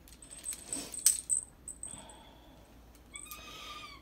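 A small jingle bell on a cat toy jingling, with several light metallic clicks and a thin high ringing in the first second and a half, then dying away; a short steady higher-pitched sound comes in near the end.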